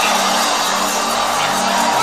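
Background music of long held chords, steady throughout, over the noise of a large congregation.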